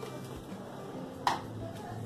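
A single sharp plastic knock about a second in, as the blender jar is handled and lifted off its motor base.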